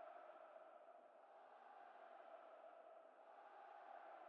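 Near silence: faint steady room tone.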